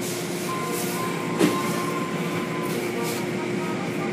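Automatic tunnel car wash heard from inside a car: a steady rush of water spray over a machinery hum, with one sharp knock about a second and a half in.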